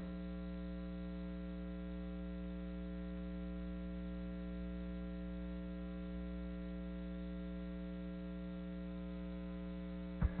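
Steady electrical mains hum, a low buzz with many evenly spaced overtones, unchanging in level, left bare while the broadcast's programme audio is silent.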